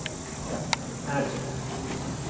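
Faint talking in the background with two brief sharp clicks, the second one louder, over a steady low rumble.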